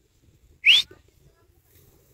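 A person's single short whistle, sliding quickly upward in pitch and breathy.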